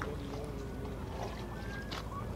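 Steady low rumble of river water and wind, with a few faint bird calls.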